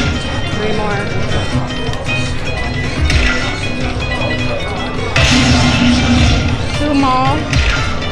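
Aristocrat Dragon Link slot machine playing its hold-and-spin bonus music and reel-spin sounds, with a rising chime about seven seconds in as a new coin lands and the free-spin count resets.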